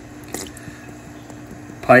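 Plastic feeding pipette being worked in the aquarium water: a single sharp wet click about a third of a second in, then a few faint ticks, over a steady low hum.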